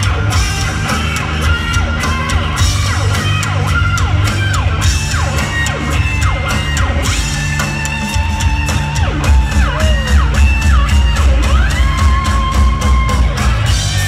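Live rock band playing loud: electric guitar with many sliding, bending notes and some held, wavering notes in the second half, over drums and heavy bass.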